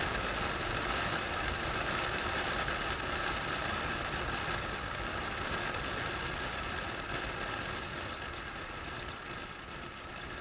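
Rover Mini driving along at road speed, its engine running under a steady rush of wind and tyre noise picked up from outside the car; the noise eases slightly toward the end.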